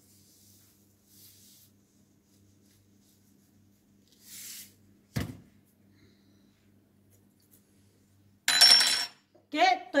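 Kitchen handling while salt is spooned into a plastic basin of water: a soft hiss about four seconds in, a sharp knock just after, and a brief metallic clatter of the spoon near the end, the loudest sound.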